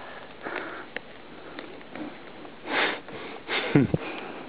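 A person's short, sharp breaths close to the microphone, twice near the end, over a faint outdoor background.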